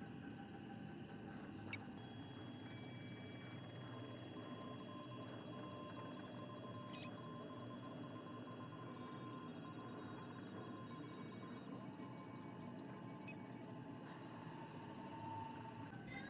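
Very faint steady high tones that come and go at different pitches, with a few soft clicks: a quiet electronic or ambient backing under the footage.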